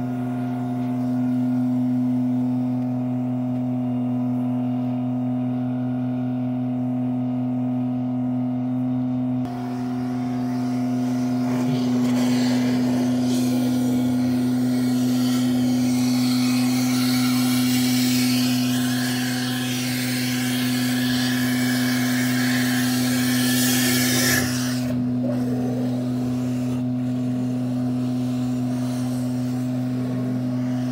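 Steady hum of a vacuum truck's suction pump running. About ten seconds in, a loud rush of air being drawn into the suction hose joins it, cutting off suddenly about twenty-five seconds in.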